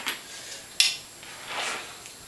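Handling noise from a compound bow and its quiver of arrows being lifted: a single sharp click a little under a second in, then a short rustle.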